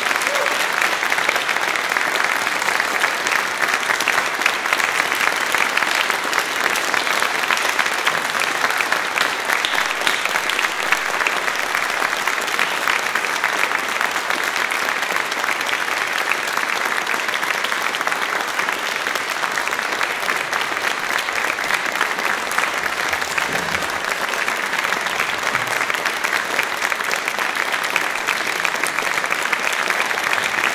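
Audience applauding steadily, many hands clapping in a dense, even clatter that runs without a break.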